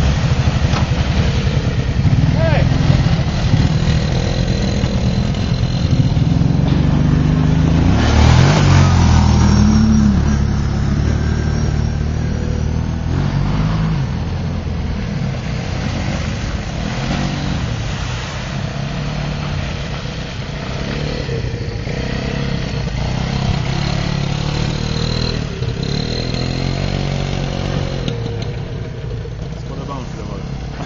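Small ATV four-wheeler engine running and revving while riding through mud, its pitch rising and falling, with the strongest revving about eight to ten seconds in before it settles to a steadier, lower run.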